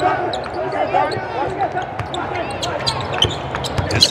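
A basketball being dribbled on a hardwood court, with repeated sharp bounces and short squeaks of sneakers on the floor as players move on offense and defense.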